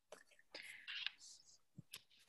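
Near silence with a few faint, breathy whispered sounds from a woman murmuring under her breath between about half a second and a second in.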